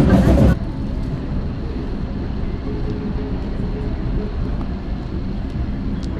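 Background music that cuts off about half a second in, followed by a steady low outdoor rumble of urban ambience.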